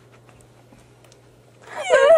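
A quiet lull with a faint steady low hum, then about one and a half seconds in a loud, high-pitched vocal sound with a wavering pitch begins.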